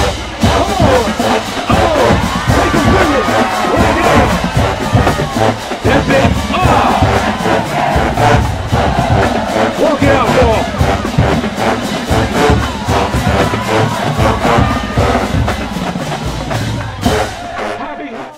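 Marching band playing: sousaphones and other brass over a steady drum beat, with crowd noise mixed in.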